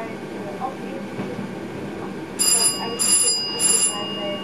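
A warning bell in a train driver's cab rings three short times, evenly spaced, a little past halfway, with a high tone lingering after the last. The train's low running noise goes on underneath.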